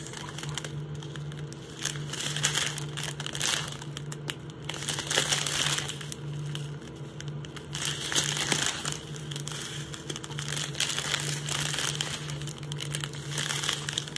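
Small plastic zip-lock bags of diamond painting drills crinkling in intermittent bursts as they are handled and turned over. A steady low hum runs underneath.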